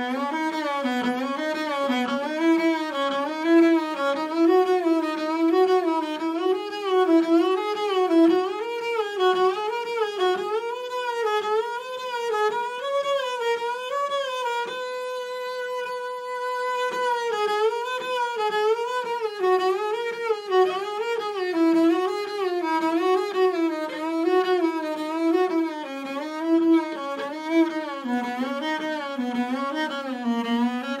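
Double bass played with the bow, running quick three-note up-and-down patterns that climb step by step through the upper octave of the fingerboard. About halfway through it holds one long note at the top, then the patterns work back down.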